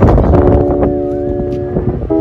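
Wind buffeting the microphone as a low rumble, over background music holding a steady chord.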